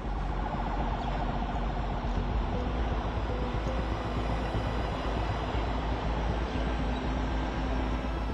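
Street noise with vehicles, and a fast warbling siren-like tone over it for the first few seconds.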